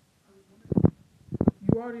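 Two short, loud, low thumps on the phone's microphone, about half a second apart, then a voice starts speaking near the end.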